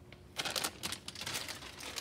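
Plastic wrapping crinkling in quick, irregular crackles as a slice of Muenster cheese is taken out of its packaging. The crackling starts about half a second in.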